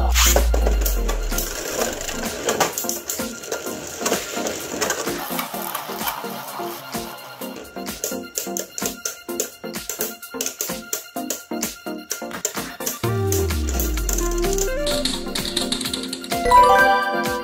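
Two Beyblade Burst spinning tops clashing inside a plastic Beyblade stadium: a fast, uneven rattle of clicks and knocks as they strike each other and the stadium wall, over background music.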